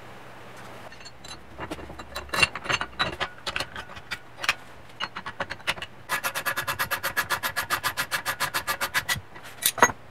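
Light metal clicks and knocks as machined aluminium engine mount plates and tools are handled, then a ratchet wrench clicking rapidly and evenly, about ten clicks a second, for about three seconds as the mounts are bolted to the engine case.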